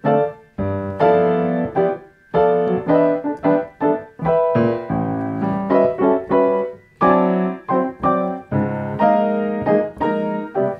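Grand piano played in block chord style: full chords in the left hand struck together with the right-hand melody. It is a phrase of ringing chords, two or three a second, each dying away before the next, with a few short breaks.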